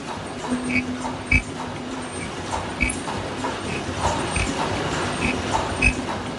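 Automatic face-mask production line running at its mask stacking and output unit: a mechanical hum that comes and goes, with short high chirps repeating every half second or so. Sharper knocks come about every second and a half as the machine cycles.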